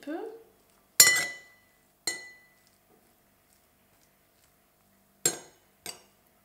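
Metal spoon clinking against a ceramic bowl while stirring cooked egg noodles: four sharp clinks, the first about a second in and the loudest. The first two ring briefly, and the last two come close together near the end.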